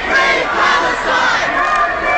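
A protest crowd shouting together, many voices overlapping in a continuous loud din.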